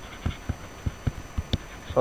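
Stylus writing on a tablet or pen-pad surface: a string of irregular light ticks and taps, several a second, as the letters are written.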